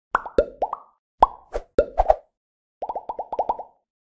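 Plop sound effects for an intro title: short bubbly pops in three quick groups, each pop a sharp click with a brief tone that drops in pitch. The last group is a fast run of about eight pops at one pitch.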